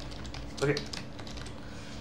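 Typing on a computer keyboard: a short run of separate keystrokes.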